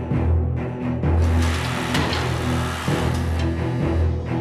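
Dramatic background music with a deep, pulsing bass. From about a second in, a harsh noise rises over it, with a sharp crack about two seconds in: a tungsten carbide piston being crushed to pieces under a hydraulic press.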